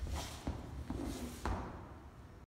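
A few footsteps of dance shoes on a wooden floor: three separate taps and thuds, about half a second apart, as the dancers finish the rock step and come to a stop.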